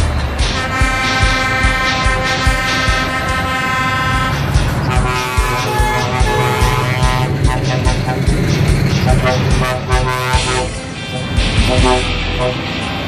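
Truck air horn blowing a steady chord for about three and a half seconds, followed by shorter tooting horn notes, over music with a steady beat.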